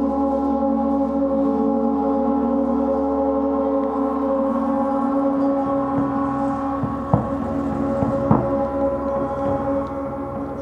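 Large suspended gong ringing on and on, a dense shimmer of many overlapping steady tones, kept going with a small mallet. Low pulsing comes in about halfway through, and two short soft thuds land in the second half.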